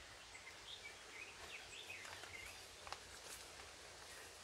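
Faint outdoor ambience with songbirds chirping: short, scattered calls, over a faint low rumble. There is a brief click just before the three-second mark.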